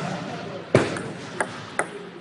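Table tennis ball strikes: three sharp, ringing clicks over steady room noise, the loudest about a second in and two lighter ones about half a second apart after it.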